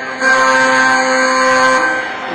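Electronic scoreboard buzzer sounding one steady, loud tone for about a second and a half, signalling the end of the round.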